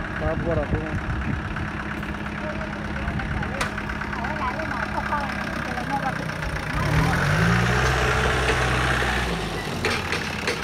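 An engine running steadily under faint voices. About seven seconds in, a louder engine comes in, rises briefly in pitch, holds, and cuts off just before the end.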